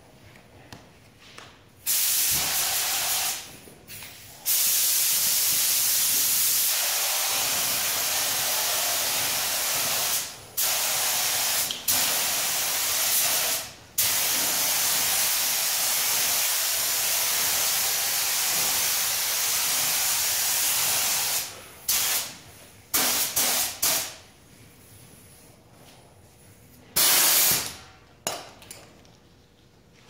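Compressed-air gravity-feed spray gun hissing as base coat blending solvent is sprayed onto panels: a series of trigger pulls, with one long run of passes lasting most of the middle, broken by brief gaps, and shorter bursts near the start and toward the end.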